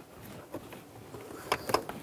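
Carpeted plastic trunk side trim panel being gripped and pulled, a low rubbing and rustling with a few sharp plastic clicks about one and a half seconds in.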